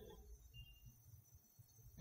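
Near silence: faint room tone in a pause between sentences.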